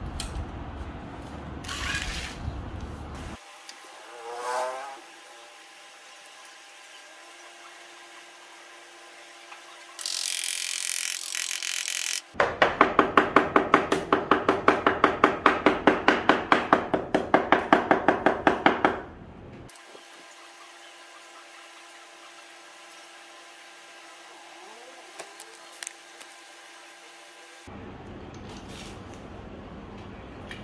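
A hand tool working the plywood, with fast, even strokes at about three a second for several seconds in the middle, like sawing or rasping. A short hiss comes just before the strokes.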